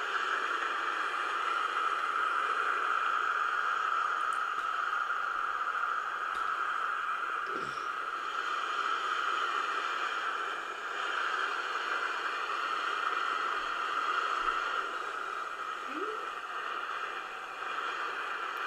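Steady rushing hiss with no clear tone or rhythm, and a short laugh about eight seconds in.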